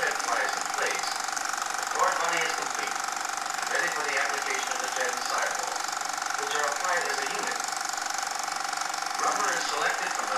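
Muffled, indistinct male narration from an old film soundtrack, in short phrases with brief pauses, over a steady hum and hiss.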